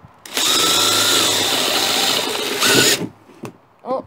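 Cordless drill running with a steady high whine as it bores an air hole through a thin plastic tub lid. It runs for about two and a half seconds, then stops suddenly.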